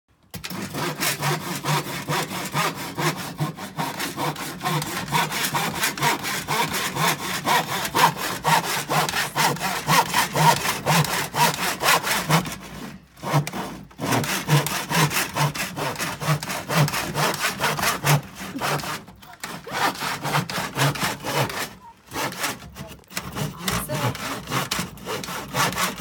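Hand saw cutting a wooden board in quick, even back-and-forth strokes. It stops briefly about halfway through and twice more near the end.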